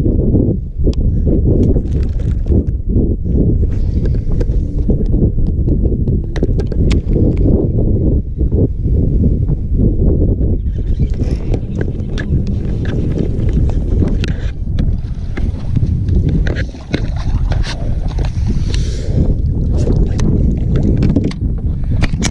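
Heavy wind rumbling on the microphone, with scattered sharp clicks over it as a hooked fish is cranked in on a baitcasting reel.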